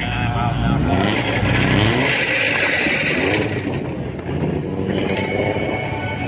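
Indistinct voices over a car engine running, with the steady rumble of vehicles in the background.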